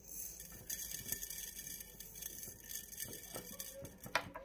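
Faint, irregular light clicks and pattering of black olives and coarse salt settling in a glass jar.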